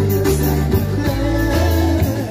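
Live band music with a steady bass line, plucked guitar and a regular cymbal beat, with at most a little singing.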